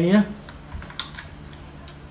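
A few light plastic clicks and taps from handling a DJI Mavic Mini remote controller and its clip-on joystick bracket, four or so sharp clicks spread over two seconds.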